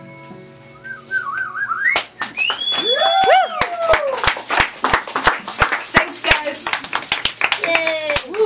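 The last chord of an acoustic guitar and pedal steel dies away, and a warbling whistle follows. From about two seconds in, a small crowd claps, with several loud rising and falling whistles over the clapping.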